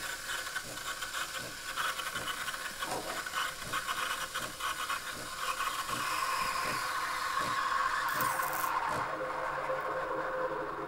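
Breville Barista Touch steam wand automatically frothing milk in a stainless steel pitcher: a crackling, sputtering hiss as air is drawn into the milk, settling into a smoother hiss with a steady tone as the milk heats. The high hiss drops away near the end as the automatic frothing finishes.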